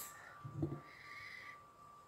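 A quiet stretch over a faint steady high whine. About half a second in there is a brief low hum-like voice sound, and around a second in a soft short hiss.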